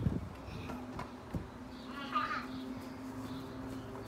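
A faint steady low hum runs throughout, with a brief high-pitched voice about halfway through.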